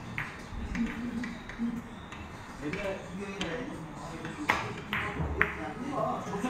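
Billiard balls clicking on a four-ball carom shot, with three sharp clicks in the last second and a half as the cue ball strikes the object balls. Voices carry on underneath.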